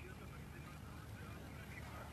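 Faint steady background hiss with a low hum, with no distinct event.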